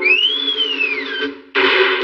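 Cartoon fight-whirlwind sound effect: a whooshing rush with a whistle that rises and then falls, then a sudden loud rush of noise about one and a half seconds in.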